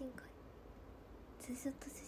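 Speech only: a woman's voice, soft and faint. The end of a word at the start, then a brief soft murmur of speech near the end, over quiet room tone.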